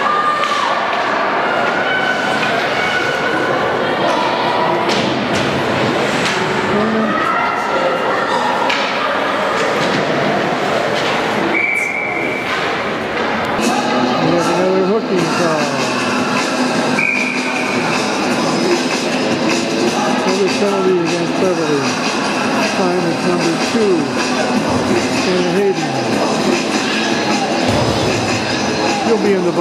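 Many voices of spectators and players echoing in an ice rink, with scattered thumps. Two short high tones sound about twelve seconds in and again about five seconds later.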